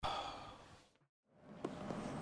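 A person's long breath out, a sigh, fading away over about the first second. The sound then drops out completely for a moment before faint room noise returns.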